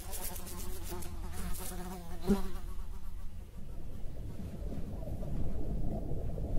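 A buzz with a wavering pitch, like a fly's, fading out about three and a half seconds in as a low rumbling noise takes over.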